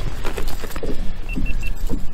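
Steady low rumble of wind buffeting the microphone, with light rustling and clatter on the boat deck. Three short high beeps come in quick succession a little past the middle.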